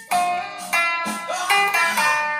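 Guitar played solo, single picked notes about two a second, with one note bent upward just past a second in.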